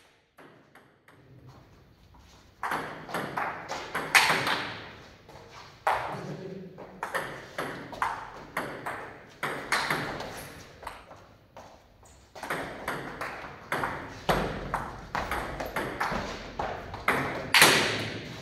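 Table tennis ball clicking back and forth on the table and on a paddle faced with Yinhe Moon Speed 53 tensor rubber, in quick rallies broken by short pauses. The hitting starts about two and a half seconds in.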